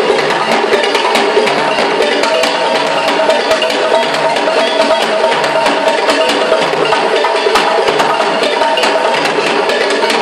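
West African hand-drum ensemble playing live: djembes, congas and an hourglass talking drum in a dense, fast, unbroken stream of sharp strokes, with some steady pitched notes ringing through.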